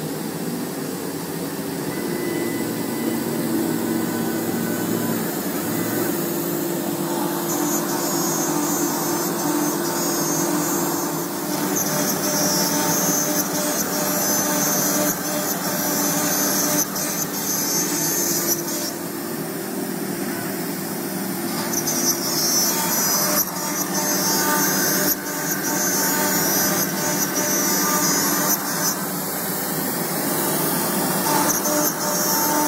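CNC router spindle running steadily with a whine while its bit cuts grooves into a sheet panel. A loud cutting hiss comes in for two long passes, from about a third of the way in and again past two-thirds.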